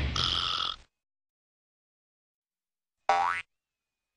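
The intro music ends with a short chime-like note that cuts off under a second in, followed by silence. Near the end comes a single quick cartoon 'boing' sound effect whose pitch rises steeply.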